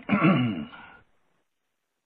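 A man clearing his throat once, a soundboard clip lasting about a second.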